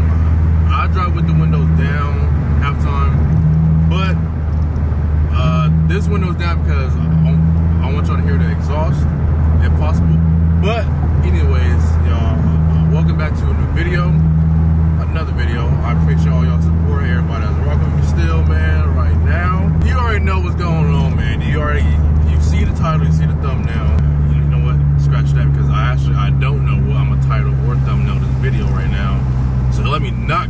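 Steady low drone inside a moving car's cabin, with a man's voice over it.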